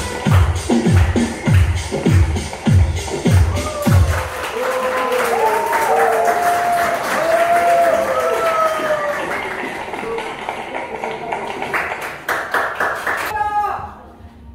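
Dance music with a heavy, regular beat plays for the first four seconds, then the beat stops. People's voices and clapping follow, with a quick run of claps about a second before the end.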